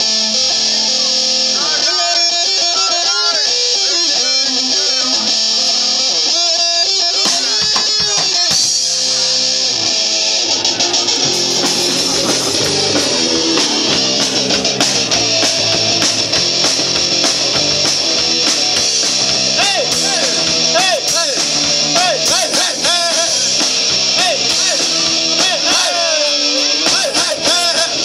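Live rock band playing loud: electric guitars and a drum kit, cymbals filling the top, heard through the stage PA. The sound grows fuller about nine seconds in.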